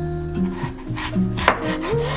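Chef's knife cutting through an apple and knocking onto a wooden cutting board, a few short strokes with the loudest about one and a half seconds in. Guitar background music plays underneath.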